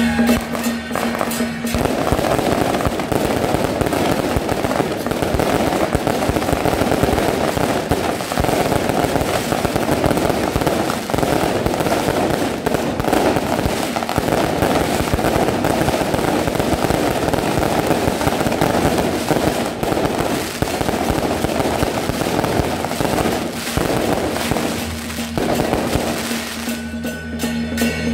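A long string of firecrackers going off as a rapid, unbroken crackle, starting about two seconds in and stopping just before the end. Music is heard before the crackle starts and again after it stops.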